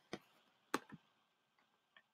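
A few faint, short clicks of a computer mouse advancing a slide presentation, the loudest just under a second in.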